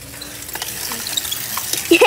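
A child's bicycle rolling over a gritty asphalt driveway: a crackly tyre hiss that grows louder as the bike comes close.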